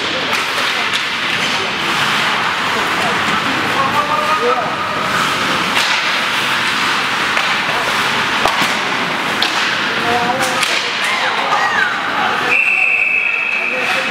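Ice hockey rink sound: skates scraping the ice, sticks and puck clacking with sharp knocks, and players calling out. Near the end a referee's whistle blows one steady note for over a second, stopping play.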